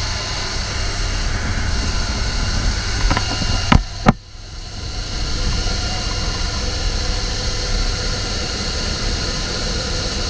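Steady rush of wind and aircraft engine noise through the open door of a jump plane in flight. Two sharp knocks come about four seconds in, then the noise dips briefly before returning.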